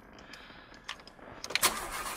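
Car key clicking in the ignition, then the car's engine cranks and starts about a second and a half in, the loudest moment, and settles into a steady run.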